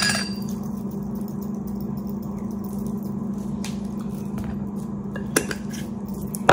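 Small spice jars being handled and shaken over a bowl of sauce, giving a few faint clicks and one sharper tap a little over five seconds in, over a steady low hum.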